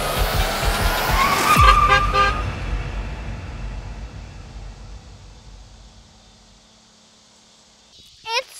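Pickup truck braking hard with a tyre screech about a second and a half in, after a rising whoosh. A low rumble follows and fades away over the next few seconds.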